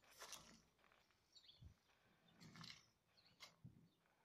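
Near silence, with a few faint brief ticks.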